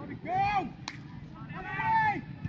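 Two loud shouts in high, young voices about a second and a half apart. Between them comes a single sharp smack of a football being kicked.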